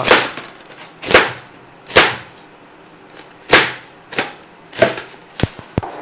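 Styrofoam packing being pried apart and pulled out of a box: about six short, sharp cracking noises roughly a second apart, then a few lighter clicks near the end.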